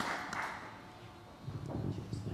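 Audience applause dying away in the first half-second, then a lull with a few low, irregular bumps in the second half.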